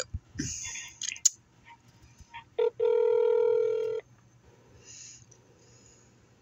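Telephone ringback tone over the phone's speaker while a call is being transferred: a few clicks first, then a short beep and one steady ring a little over a second long starting about two and a half seconds in.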